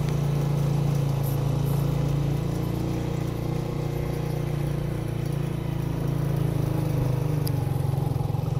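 Honda CG125 motorcycle's single-cylinder four-stroke engine pulling steadily under load up a steep hill, heard from the rider's seat, its level easing slightly in the middle and picking up again near the end.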